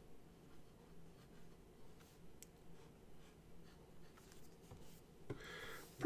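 Faint scratching of a Nemosine Singularity fountain pen's 0.6 mm stub nib writing on paper. Near the end comes a brief, louder rubbing on the paper as the fresh ink is smeared.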